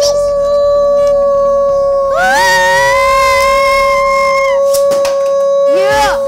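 Voices holding a long, drawn-out yelled note. One steady note runs throughout, and a higher voice swoops up to join it about two seconds in and drops out about two and a half seconds later.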